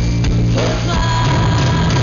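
Live rock band playing loud with electric guitars, bass and drums, and a female singer's voice joining in about half a second to a second in with a held note.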